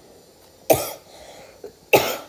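A person coughing twice, about a second apart, each cough short and sharp.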